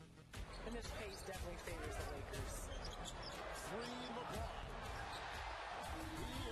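Basketball game sound: a ball bouncing on the hardwood amid arena crowd noise that rises about half a second in and stays loud, with scattered voices.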